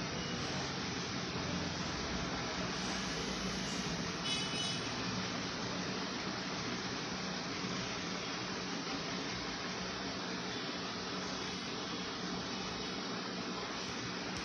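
Steady hiss of background noise with a faint low hum running under it, unchanging in level; a brief faint tone sounds about four seconds in.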